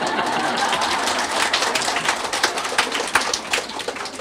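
An audience clapping, a dense patter of many hands that dies away toward the end.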